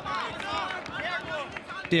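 Indistinct voices of people talking at the ground, quieter than the narrator, over steady outdoor stadium background.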